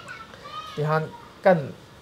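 A man speaking quietly in a few short phrases, with pauses between them.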